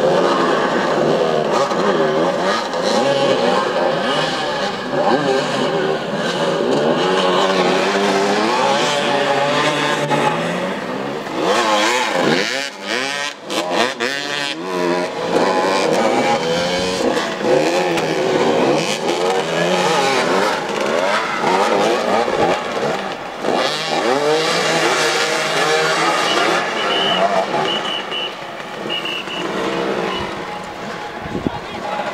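Several motoball motorcycles running together on the field, their engines revving up and down over one another in constantly shifting pitches, with a brief lull about twelve seconds in.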